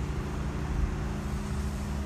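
A heavy truck's diesel engine idling: a steady low rumble with a constant hum.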